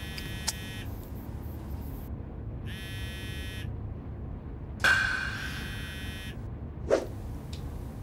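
A buzzing electronic tone sounds three times: two short buzzes and then a longer one, over a low steady room tone. A short, sharp sound follows near the end.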